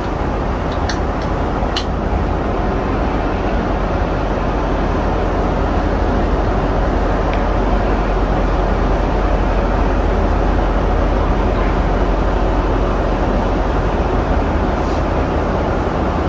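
Steady in-flight cabin noise of a Boeing 777-200ER, the drone of engines and airflow, with a couple of faint clicks in the first two seconds.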